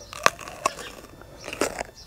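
Crisp crunching of a bite into a raw sweet Marconi Red pepper: a sharp snap about a quarter second in, then softer crunches as it is chewed.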